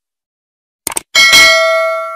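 Subscribe-animation sound effects: a quick double click about a second in, then a bright bell ding that rings on and fades away.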